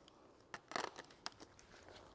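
A few faint clicks and light handling noise as a camera lens is taken off and another fitted.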